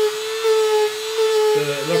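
Dremel rotary tool running with a steady high whine as its bit carves wood-grain lines into a foam mat.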